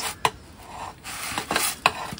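Metal turning peel scraping and rubbing across the pizza stone as the pizza is turned, with a sharp click just after the start and the scraping growing louder in the second second.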